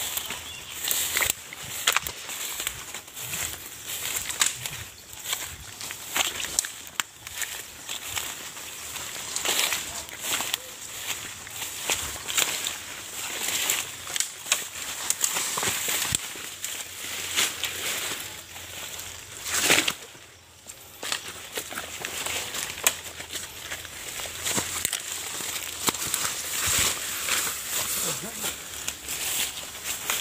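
Footsteps and bodies pushing through dense undergrowth, with leaves and twigs crackling and rustling constantly as someone hurries over rough, overgrown ground.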